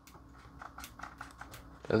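Light, irregular clicks of a Ridgid cordless drill's trigger being squeezed with no motor sound: the 18V battery pack still does not power the drill.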